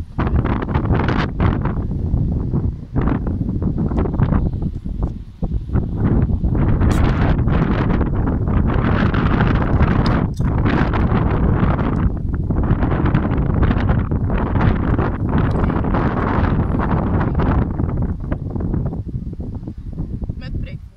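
Strong wind buffeting the microphone in uneven gusts. About halfway through comes a sharp click as the ring-pull of a drink can is opened.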